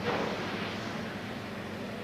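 Steady hiss and rumble of factory ambience around boiling cauldrons of herbs, with a faint low hum underneath.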